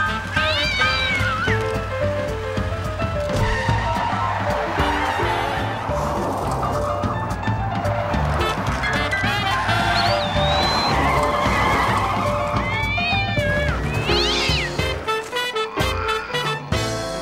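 Lively background music scoring a cartoon chase, with a steady beat throughout. A few short, high, gliding animal-like calls sound over it near the start, about ten seconds in and again shortly before the end.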